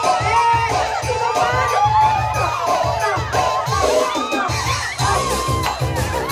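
A large crowd of women and children shouting and cheering at once, clamouring for a prize held up in front of them, over music with a steady beat.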